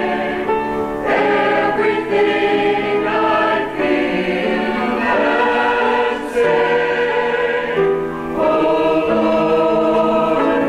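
A mixed choir of men's and women's voices singing in parts, holding long notes in phrases with brief breaks between them.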